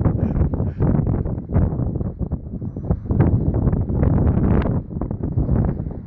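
Strong, gusty wind buffeting the microphone on an open boat at sea, a loud uneven rumble that rises and falls with the gusts.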